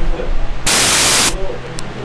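Loud bursts of static hiss over a faint, muffled voice and a steady hum, with one burst about half a second in lasting under a second before dropping back.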